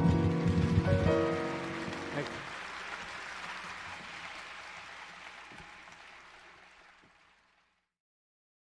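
Guitar playing the final notes of a Piedmont blues song, ending about two seconds in. An even rushing noise follows and fades away gradually to silence shortly before the end.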